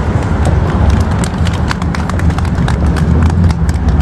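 Scattered hand clapping from a small group, irregular claps several times a second, over a steady low rumble.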